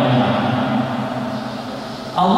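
A man's voice chanting a religious recitation, holding one long low note that slowly fades toward the end.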